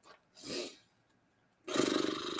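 A person's breath sounds: a soft exhale about half a second in, then a louder, partly voiced breath out starting near the end.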